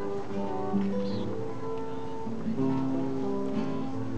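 Acoustic guitar being strummed, chords ringing out steadily.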